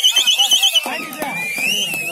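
A pea whistle trilling loudly for just under a second, a high warbling blast, over shouting from players and crowd. Rising and falling whistled notes follow near the end.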